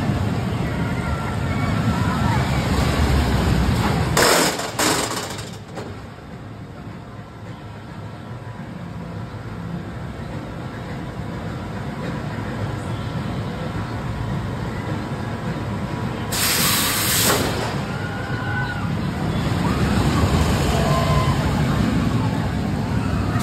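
Vekoma Boomerang steel shuttle roller coaster train rumbling along its track through the loop, with riders screaming. It goes quieter while the train is held up the spike, with two loud hisses, about four seconds in and again about sixteen seconds in, before the rumble and screams return as the train runs back through the loop.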